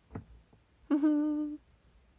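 A young woman hums once about a second in: a short closed-lip 'mm' held steady for under a second.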